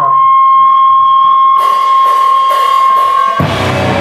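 A steady, high amplifier feedback whine holds on one pitch. About a second and a half in, cymbals start washing over it. Near the end the feedback cuts off and a rock band crashes in loud at once, with drums, distorted guitar and bass.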